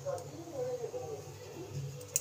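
Faint voices in the background over a low steady hum, with no kitchen clatter.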